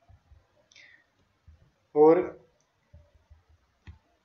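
Faint, scattered low clicks and knocks from a computer mouse being worked on a desk while the slide is changed. A single short spoken word comes about two seconds in.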